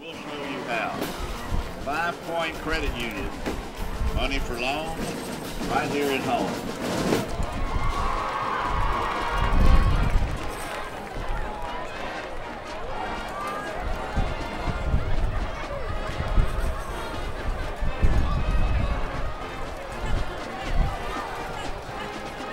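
Football stadium ambience: music and indistinct voices carried over the field, with irregular low thumps.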